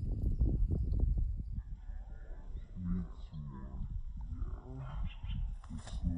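Wind rumbling on the microphone for the first second or so, then a low, muffled human voice from about two and a half seconds in, with no clear bird calls.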